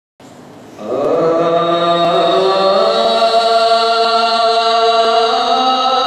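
A man's solo voice chanting a Pashto religious lament (noha). It comes in about a second in and holds long, drawn-out notes that step slowly from one pitch to the next.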